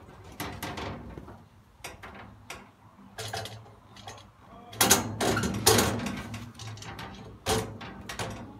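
Sheet-metal mill stand being set down and shuffled onto a welded steel mobile base: metal-on-metal clunks and scraping, with the loudest clatter about five seconds in and a sharp knock near the end.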